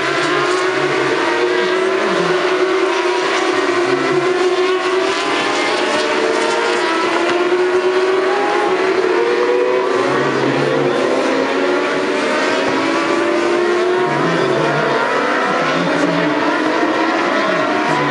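A pack of 600cc supersport racing motorcycles running on the circuit. Several engine notes overlap, each rising in pitch as the bikes accelerate, then dropping back and rising again.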